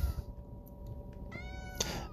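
A cat meows once, briefly, about one and a half seconds in, over low background noise.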